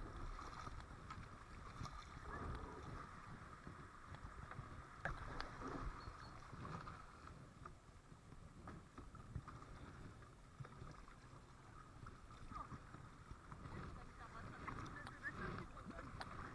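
Kayak paddling down a shallow river riffle: water rippling over stones around the hull and paddle blades dipping, with a few faint knocks. Wind rumbles on the microphone.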